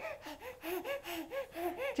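A baby making quick, breathy voiced gasps, about five a second, each short sound rising and falling in pitch.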